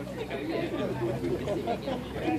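Background chatter: several people talking at once in low voices, with no single clear speaker, over a steady low hum.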